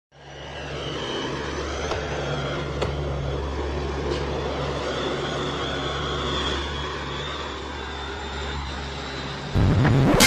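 A steady low engine drone with a few faint clicks, and music coming in loudly just before the end.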